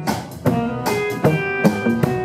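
Live band playing an instrumental passage between sung lines: electric and acoustic guitars, with held notes ringing from about half a second in.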